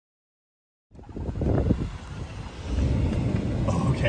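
Silence for about the first second, then the low rumble of a pickup truck driving along a rough dirt track, heard from inside the cab.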